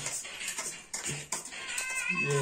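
Domestic cat meowing: one drawn-out, high call that begins near the end.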